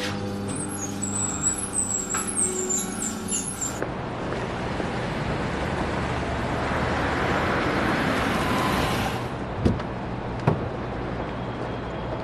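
A car drives up and stops. The rush of its tyres and engine swells for several seconds and then cuts off, followed by two short thumps.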